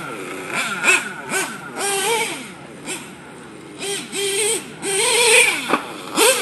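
Nitro RC truck's Picco Boost .28 two-stroke glow engine, fitted with an EFRA 2041 tuned pipe, revving in repeated short bursts with its pitch rising and falling at each throttle blip. It is on its first tanks of fuel, still being run in.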